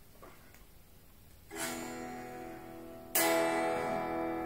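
Solid-body electric guitar with three single-coil pickups, played unplugged so only its bare strings are heard: a chord is strummed about one and a half seconds in, then a second, louder chord just past three seconds, left ringing. Without the amplifier it already sounds much like an acoustic guitar.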